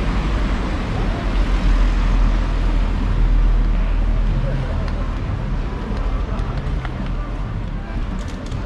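Street traffic noise: a low rumble of passing road vehicles that swells to its loudest a few seconds in and then eases off, with scattered voices of passers-by.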